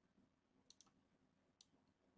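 Near silence with three faint computer-mouse clicks, two close together near the middle and one more later.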